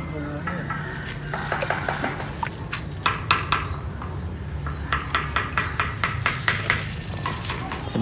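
Water splashing and sloshing as a hand and a small glass container scoop through a shallow styrofoam fish tank, with a quick run of irregular splashes in the middle. A steady low hum runs underneath.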